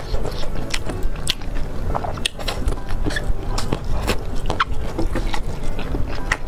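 Close-miked chewing of slippery mung-bean jelly sheets (fenpi) stir-fried with egg, with many irregular wet mouth clicks and smacks.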